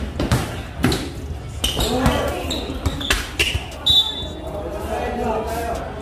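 A basketball dribbled on a hard court floor: a string of uneven bounces, thickest in the first few seconds, with spectators' voices around it.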